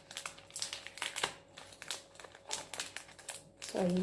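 Crinkling of a small packet wrapper handled in the fingers: irregular crackles and clicks.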